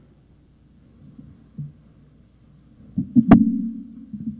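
A steady low hum over quiet room sound. About three seconds in come a few low thumps and one sharp knock from the lectern microphone being handled.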